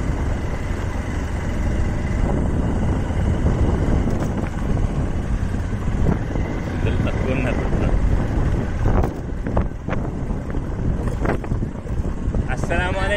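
Steady rumble of a vehicle driving over a rough, dusty country road: engine and tyre noise with wind buffeting the microphone, and a few knocks from bumps in the last few seconds.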